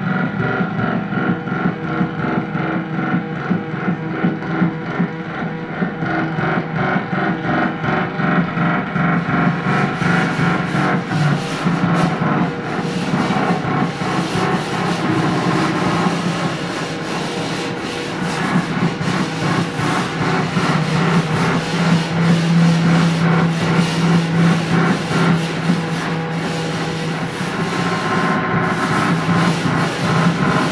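Free-improvised experimental music: a dense, continuous texture of rubbing and scraping sounds over a steady low drone, with a brighter hiss joining about a third of the way in.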